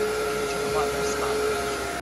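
Monarc Charlie cordless vacuum running with its powered spinning mop head fitted: a steady motor hum with a high whine.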